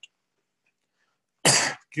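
A single cough about one and a half seconds in, after near silence, heard through a video-call line.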